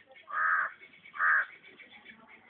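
A bird cawing twice, the calls a little under a second apart, each lasting under half a second.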